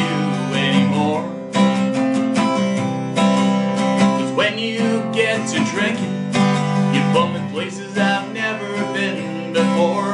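Steel-string acoustic guitar strummed in a steady rhythm, ringing chords played as an accompaniment between sung lines.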